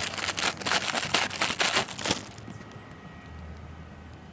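Thin clear plastic bag crinkling as a squishy toy is worked out of it, a dense run of crackles that stops about two seconds in.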